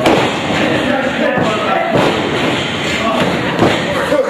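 Wrestlers' bodies hitting the ring mat: a heavy thud right at the start, then further thuds about two seconds in and near the end, over a haze of voices in the hall.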